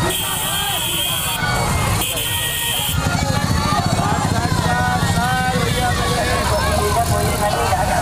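Motorcycle engines running in a slow, crowded procession, under many people shouting over one another. A high steady tone sounds twice in the first three seconds, and the engine rumble grows stronger after about three seconds.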